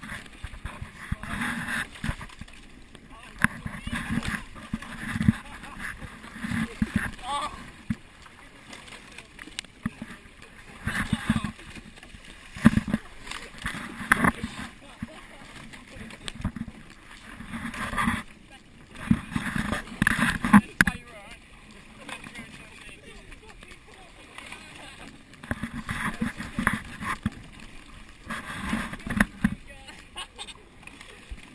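Indistinct voices of the rowers in short bursts over the splashing of water and oar strokes on choppy water.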